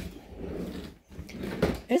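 A sharp click, then rustling, shuffling noise from the phone being carried and handled while someone moves about; a woman's voice starts just at the end.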